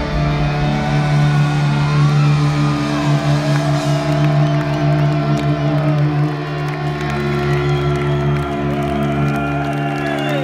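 Amplified electric guitars and bass holding one ringing final chord of a thrash metal song after the drums stop, while the crowd cheers and whoops over it.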